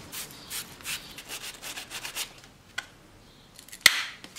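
Copper plumbing fittings being scoured by hand to clean them before soldering: rhythmic scrubbing strokes, about two or three a second, that stop a little past two seconds in. Just before the end comes a single sharp knock, the loudest sound, as something hard is set down or picked up.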